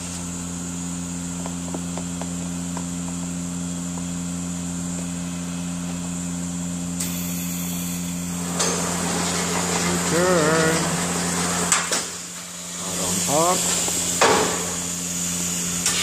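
Vacuum-forming (thermoforming) machine running steadily at the end of a forming cycle. Its motor hum holds through the first half, then a rush of air comes in about halfway. Near the end the hum drops away amid a couple of sharp mechanical knocks.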